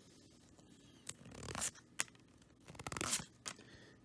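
Trading cards handled and slid against each other: soft scraping and rustling of card stock, with a few sharp clicks about a second in, near two seconds and around three seconds.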